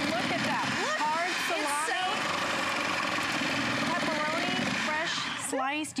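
Electric motor of a NutriBullet Veggie Bullet slicer running steadily while it slices pepperoni, with voices faintly under it. The motor stops about five and a half seconds in.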